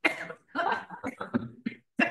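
A person coughing, with a sharp burst at the start and a few fainter short sounds after it.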